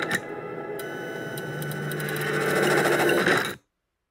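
A sharp hit, then a harsh mechanical buzz with a low hum that grows louder and cuts off suddenly about three and a half seconds in.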